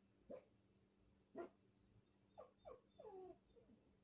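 An animal whining faintly in about six short calls, several of them sliding down in pitch, over a faint steady low hum.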